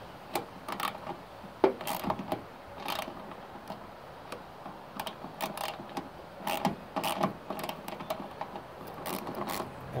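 Irregular small metallic clicks and ticks from hand work on a car wing mirror's adjustment fitting with a small socket wrench, coming in short clusters.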